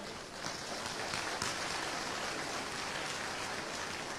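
A church congregation applauding, building about half a second in and then holding steady.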